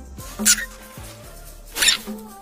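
Desert rain frog giving two short, shrill squeaks, about a second and a half apart: its defensive call when disturbed.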